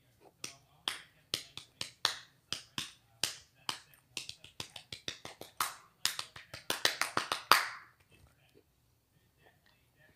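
A fast, irregular run of sharp clicks or snaps close to the microphone, about four a second, stopping about eight seconds in.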